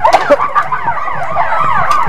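Several emergency-vehicle sirens sounding at once, each sweeping rapidly up and down in pitch a few times a second so that the wails overlap, over a faint steady tone.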